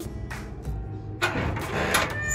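Steel-framed corrugated metal garden gate being unlatched and pushed open: a few sharp clicks of the latch, then a rattling scrape from about halfway in, ending in a loud clack.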